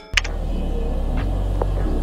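A sharp click, then a steady low rumble of room noise with a few faint ticks over it.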